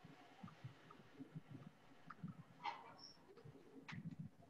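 Near silence with faint, irregular taps and scratches of chalk writing on a blackboard.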